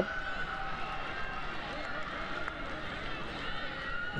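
Football stadium field sound: a steady hubbub of many distant voices and shouts from the crowd and the pitch after a goal.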